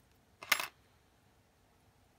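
A metal spring bar tool set down on a tabletop: one short metallic clatter about half a second in.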